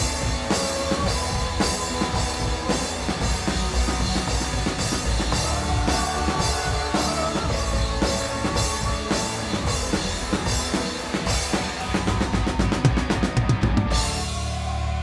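Live rock band playing, the drum kit in front with steady bass-drum and snare hits. Over the last two seconds the hits speed up into a fast drum roll.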